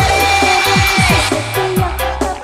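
Live dangdut band music: a long held high melody note over drum strokes that drop in pitch, with a steady cymbal beat.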